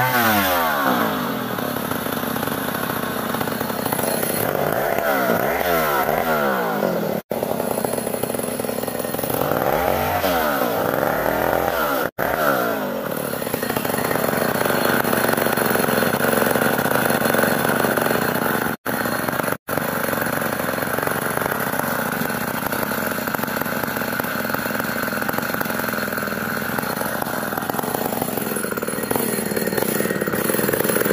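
A Chinese-made STIHL-branded two-stroke chainsaw ripping a log of ulin ironwood lengthwise. The engine pitch swings up and down several times in the first half, then it runs steadily under load. The sound cuts out for an instant four times.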